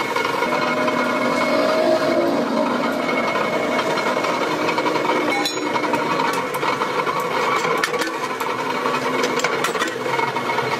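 Mechanical power press running steadily, its motor and flywheel turning without striking, while a steel spade blank is set on the bed. A few light clicks come in the second half.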